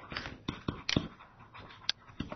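Stylus tapping and scratching on a tablet computer screen during handwriting: irregular sharp clicks a fraction of a second apart, with a faint scratchy hiss between them.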